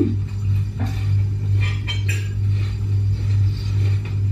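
Metal fork clicking and scraping against a plate and plastic takeaway containers while eating, a few short clinks in the first half, over a steady low hum.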